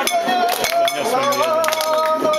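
Men's voices calling out in long, held, wavering tones, several of them rising in pitch about halfway through, over a constant, rapid metallic clinking.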